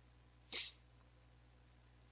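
A single short breath noise, a quick sniff or intake of air, about half a second in, over a faint steady low hum.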